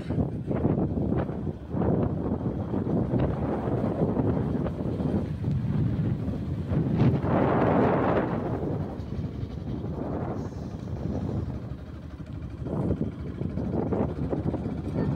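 Wind buffeting the microphone in gusts, with a stronger gust about halfway through.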